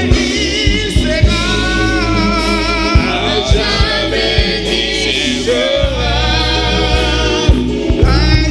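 Live gospel worship song: a group of singers in harmony, with wavering held notes, backed by a church band with bass and a steady beat of drum hits.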